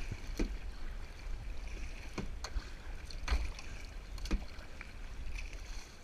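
Kayak paddle strokes, the blade dipping and splashing in the water, with several sharp, irregular knocks over a low rumble.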